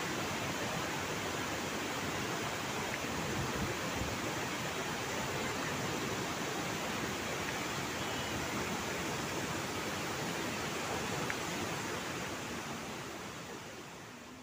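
Steady rushing roar of water pouring down a tiered cascade waterfall, fading out near the end.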